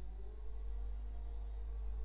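Quiet room tone: a steady low hum, with a few faint held tones above it.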